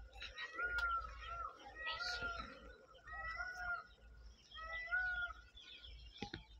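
Animal calls: short, level-pitched notes that repeat about once a second, with a sharp click about a second in.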